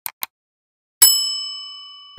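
Subscribe-button animation sound effect: two quick mouse clicks, then about a second later a bright bell ding that rings and slowly fades.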